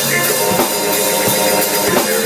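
Live drum kit played with steady bass-drum and snare hits under held keyboard notes.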